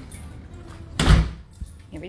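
A door shutting with a single heavy thud about a second in.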